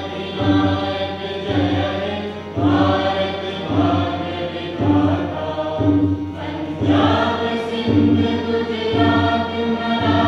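A choir singing a slow, solemn song with accompaniment, over a steady low beat about once a second.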